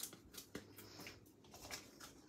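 Faint, sparse ticks and light rustles from a plastic sheet of foam adhesive dimensionals being handled over a wooden tabletop.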